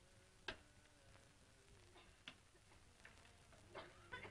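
Near silence: faint hiss broken by a few scattered sharp clicks at uneven spacing, the loudest about half a second in.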